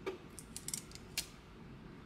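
A few faint, sharp clicks and scratches from a small hand tool picking at the wrap on a freshly heat-pressed ceramic mug.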